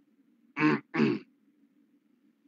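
A person clearing their throat twice in quick succession: two short bursts about half a second apart. A faint steady low hum runs underneath.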